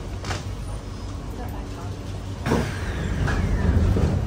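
Cabin noise inside a C151A MRT train: a steady low hum with a short knock shortly after the start. About two and a half seconds in, a louder rushing noise with a falling whine starts and builds toward the end.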